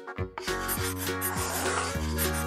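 A scratchy scribbling sound effect, like a crayon rubbed quickly over paper, starting about half a second in, over cheerful background music.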